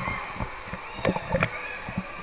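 Pool water sloshing and splashing right against a camera held at the water surface, with a few short sharp splashes about a second in, over the steady background din of an indoor swimming pool hall.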